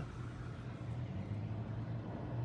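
Quiet steady low hum of background room noise, with no distinct events.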